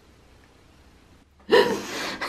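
Quiet room tone, then about one and a half seconds in a woman's sudden loud gasping laugh.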